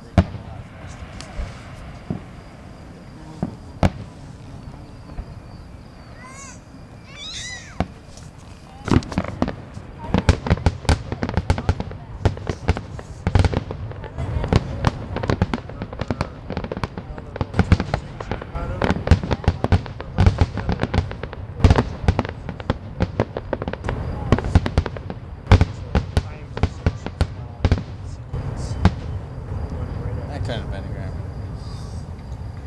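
Fireworks display: a few scattered shell bursts, then from about nine seconds in a rapid, nearly continuous barrage of bangs.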